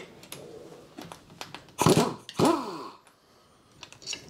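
Brake caliper bolt being undone with a socket wrench while a spanner holds the nut: a few light metal tool clicks, then about halfway through two short, loud pitched sounds that fall in pitch.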